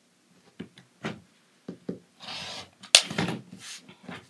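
Handling noise from a clear plastic quilting ruler and cotton fabric pieces on a cutting mat: a few light knocks as the ruler is lifted and set down, then sliding and rustling, with one sharp click about three seconds in.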